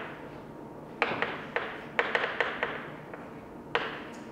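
Chalk writing on a blackboard: sharp taps of the chalk striking the board, with short scratchy strokes between them, in a quick run starting about a second in and one more tap near the end.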